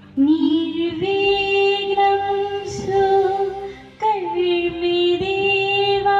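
A woman singing solo into a microphone over a PA system, holding long, steady notes, with a brief break about four seconds in.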